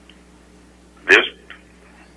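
A man says a single word about a second in, starting with a sharp pop, over a steady low hum and quiet room tone.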